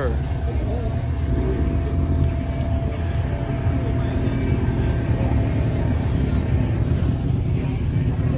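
A car engine running steadily close by, a low, even rumble, with crowd voices faintly in the background.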